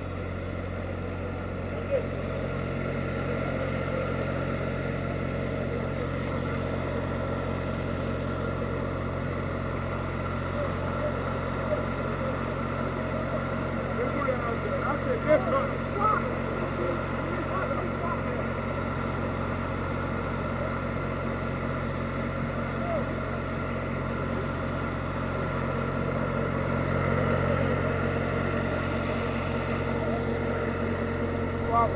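Engine idling steadily with a constant low hum, with faint crowd voices over it and a few short knocks.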